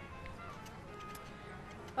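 Faint outdoor background noise with faint music and a few light ticks.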